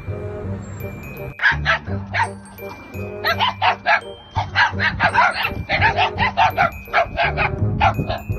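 Dogs barking in a quick run of short barks, a few at first and then many in a row from about three seconds in, over background music.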